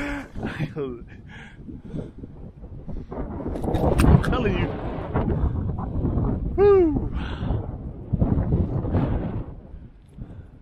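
Gusting wind buffeting the microphone, building about three seconds in. A man gives short wordless exclamations over it, including a rising-then-falling whoop about two-thirds of the way through.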